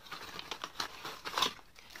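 Packaging of a modelling-dough set crinkling and rustling in short irregular bursts as a stuck jar is worked free of it, loudest about halfway through.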